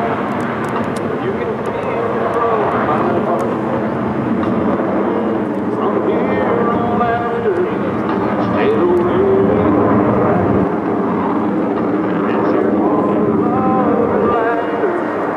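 Jet roar from a formation of F-16 Fighting Falcons passing overhead, mixed with singing or voices that bend and hold in pitch, likely a song played over the airshow's loudspeakers.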